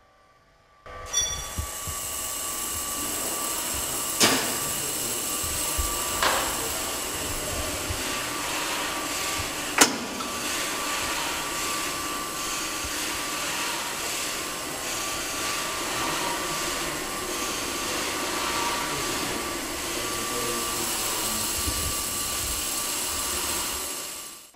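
Sectional warping machine running, its drum winding yarn drawn off a creel of cones: a steady mechanical noise with a constant high whine, starting about a second in. A few sharp clicks come about four, six and ten seconds in, the last one the loudest.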